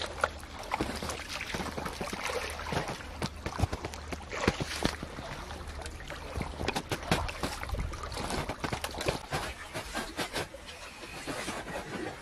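Water sloshing and splashing in shallows as a large hooked rohu is lifted out by hand, with many short splashes and knocks over a steady low rumble.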